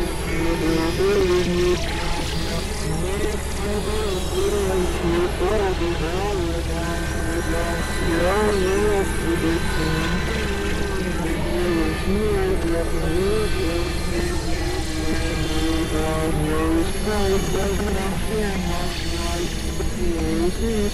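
Experimental electronic noise music: dense layered synthesizer drones over a steady low hum, with a warbling tone that wavers up and down about once a second.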